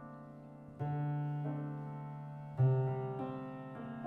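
Electric keyboard playing a slow, atmospheric instrumental tune: sustained notes fading slowly, with deep notes struck about a second in and again at about two and a half seconds, the second the loudest, and lighter notes above.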